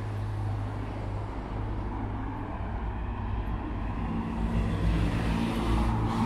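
Road traffic on a busy street: a steady rumble of car engines and tyres. In the last couple of seconds one vehicle's engine hum grows louder as it passes close by.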